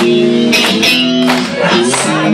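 Live rock band playing loud, with electric guitar chords ringing over drum and cymbal hits.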